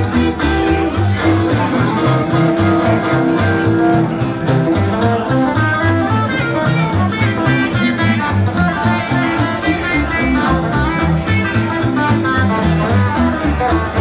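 Live honky-tonk band playing an instrumental break: electric guitars picking quick runs of notes over a steady beat, with low notes stepping along underneath.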